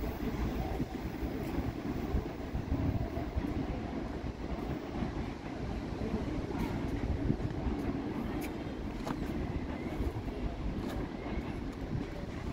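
CPTM Série 9500 electric multiple-unit train rolling away along curving track, a steady low rumble of wheels on rails, with a few faint clicks in the second half.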